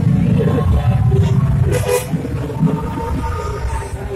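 Motorbike engine rumble amid crowd noise, heaviest in the first half, with a short clatter about two seconds in and a faint held tone during the second half.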